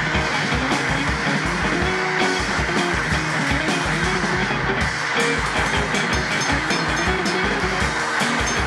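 Live rock band playing an instrumental passage: a strummed resonator electric guitar over a full drum kit keeping a steady driving beat.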